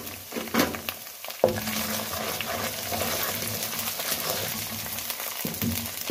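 Onion, ginger-garlic and ground spice masala sizzling steadily in hot oil in a metal pot. A spoon scrapes and stirs through it in the first second and a half, with a sharp click about a second and a half in, and the frying then runs on evenly.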